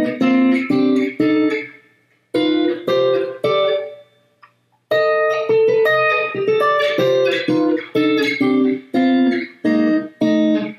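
Clean electric guitar, a Stratocaster-style solid-body, playing a run of three-note chords voice-led through C melodic minor starting from 6, 7 and flat 3, each chord plucked and left to ring, about two a second. The run pauses briefly about two seconds in and again near the middle before carrying on.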